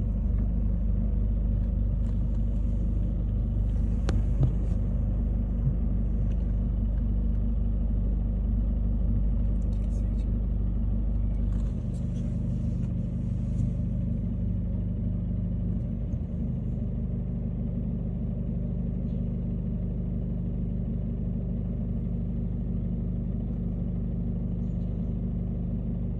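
Steady low rumble of vehicle engines running close by in the street, with a drop in its deepest part about twelve seconds in.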